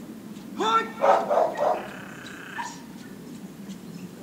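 A dog barking in a quick run of short, loud barks in the first two seconds, with one more bark a little later.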